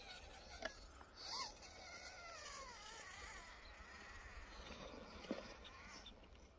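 Faint whine of an FTX Ravine RC rock crawler's electric motor and gears, its pitch wavering and falling with the throttle as the truck crawls into the dirt mounds.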